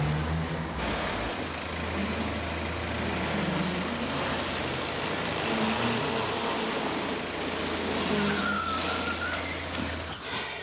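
A car engine running steadily with tyre noise as a sedan drives slowly through a parking garage and pulls into a space.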